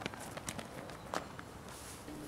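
Faint footsteps: a few irregular light taps over a quiet background hiss.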